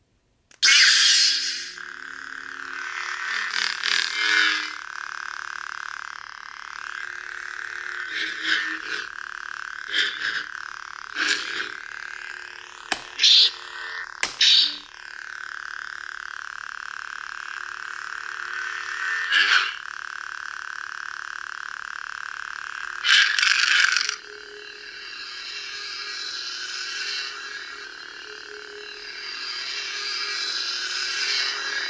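Disney Galaxy's Edge Ahsoka Tano Legacy lightsaber hilt playing its sound effects through its built-in speaker. It ignites about half a second in, then gives a steady electric hum broken by swing swooshes and two sharp clash hits near the middle. Shortly after, a loud burst changes it to a different hum as the blade switches from green to blue.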